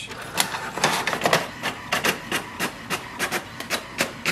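HP Smart Tank 720 inkjet printer printing a page: its paper feed and print head mechanism running with a series of sharp clicks that settle into a regular beat of several a second.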